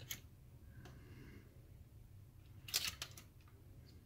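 A drive tray caddy clicking and knocking against a 3.5-inch hard drive as it is fitted by hand: a faint click at the start, another about a second in, and a quick cluster of sharper clicks near three seconds in, over a low steady hum.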